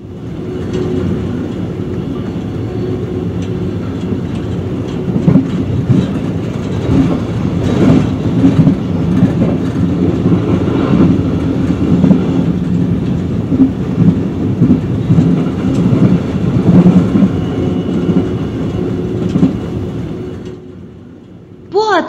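Autozug car-transport train running on the rails: a steady rumble with a busy clatter of irregular knocks. It grows louder a few seconds in and falls away near the end.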